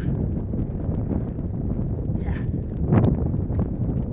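Wind buffeting the microphone as a steady low rumble, with a louder gust about three seconds in.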